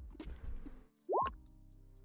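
A short rising 'bloop' of a computer chat notification sound about a second in, over faint steady background music.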